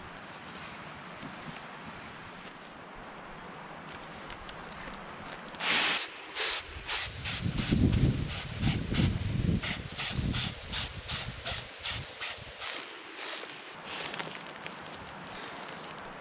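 An inflatable sleeping mat being blown up by mouth: quick puffs of breath into its valve, about three a second, from about six seconds in until near the end, over a steady background hiss.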